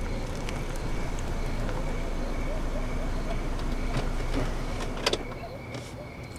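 A car's engine running low and its tyres rolling as it drives along and pulls up, with the sound easing off near the end. There is a sharp click about five seconds in.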